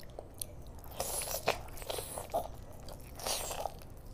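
Close-miked eating: biting and chewing curried meat on the bone with rice, heard as short bursts of mouth noise, the loudest about a second in and again just past three seconds, with small clicks between.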